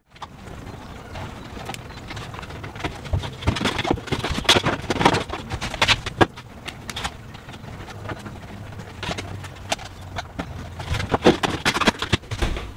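Irregular clicks, taps and knocks of a plastic roof-vent trim frame being handled and pushed into place around a ceiling vent opening, over a low steady hum.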